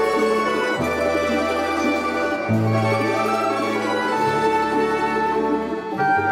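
Russian folk-instrument orchestra of domras and balalaikas playing a purely instrumental passage with no voice: plucked strings over held bass notes that change about every one and a half to two seconds.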